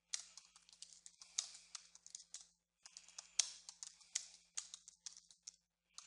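Typing on a computer keyboard: rapid runs of keystrokes, with a brief pause about halfway through.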